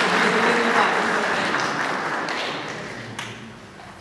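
Audience applauding in a large hall, the clapping dying away over a few seconds.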